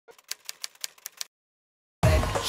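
Typewriter-style typing sound effect: about six quick, sharp key clicks that stop after just over a second.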